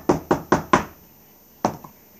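A glass jar packed with peach slices knocked down against a wooden cutting board: five quick knocks within the first second, then one more near the end.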